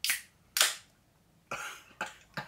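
Aluminium drink can's pull tab cracked open: a sharp click, then a louder pop with a short hiss of escaping gas about half a second in, and a softer brief noise near the end.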